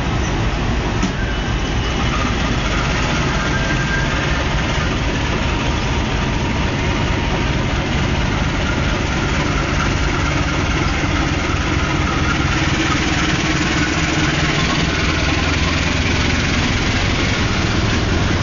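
Diesel engine of a GE CC204 diesel-electric locomotive running as it hauls a passenger train slowly out of the station, a steady low rumble that grows louder as the locomotive draws level.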